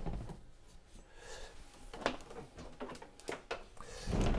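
A wooden MDF vacuum cabinet on caster wheels being shifted by hand, with a low rumble and a few short, light knocks and bumps of wood, mostly in the second half.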